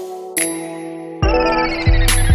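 Backing music of sustained synth tones; about a second in, a heavy bass comes in with a falling sweep.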